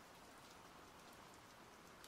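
Near silence: a faint, even background hiss.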